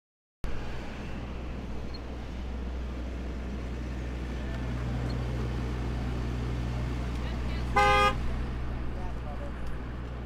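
A pickup truck camera car's engine running steadily at road speed, its low hum rising slightly midway. A single short horn toot about eight seconds in is the loudest sound.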